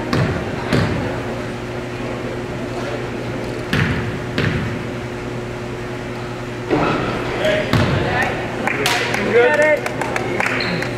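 Basketball bouncing on a hardwood gym floor, a handful of separate bounces that echo round a large hall, with spectators' voices getting louder in the last few seconds.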